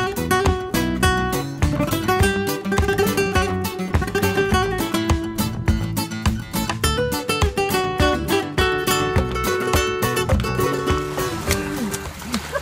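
Background music: a fast acoustic guitar piece in a flamenco-like style, with rapid strums and plucked notes. It stops near the end.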